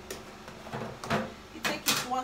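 A hand scooping a creamy hair-treatment mix out of a plastic tub, making a few short scrapes and rustles of plastic. The loudest two come close together near the end.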